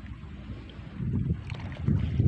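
Feet wading through shallow water and mud: low sloshing and squelching with small scattered splashes.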